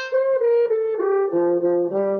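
Brass instruments playing a short tune from a TV's speaker: a horn-like melody of short notes stepping downward, joined about two-thirds of the way in by a lower brass part underneath.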